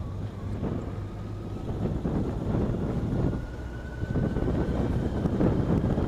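Motorcycle engine running as the bike rolls along, mixed with wind noise on the microphone.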